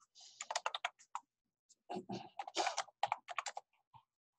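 Computer keyboard typing: quick runs of keystrokes in two bursts, the second starting about two seconds in.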